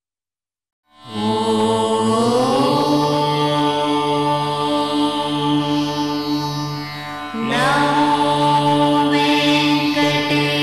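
Indian devotional music with a chanted voice over a steady drone, starting after a second of silence. The voice glides up into held notes, dips briefly about seven seconds in, then comes in again with a new rising phrase.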